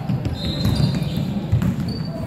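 Indoor basketball game on a hardwood court: players' feet thudding as they run the floor, sneakers giving short high squeaks, and a basketball bouncing, all echoing in a large gym.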